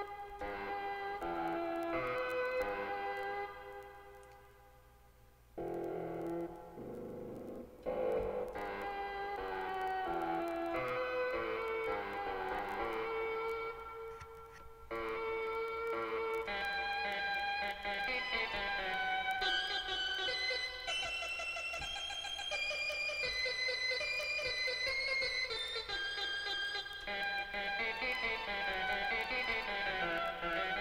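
Casio CTK-3000 keyboard playing a slow melody with a short voice sample as its sound (sampled on the keyboard at 8 kHz, 8-bit). The notes are held and overlap. They die away about four seconds in, resume near six seconds, and climb higher in the second half.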